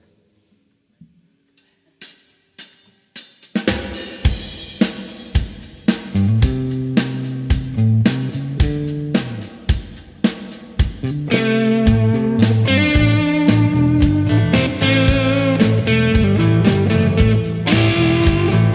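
A live rock band starting a song: after a moment of near silence a few sharp clicks count in, then a drum kit starts a steady beat, an electric bass line joins about six seconds in, and guitars fill in around the eleven-second mark.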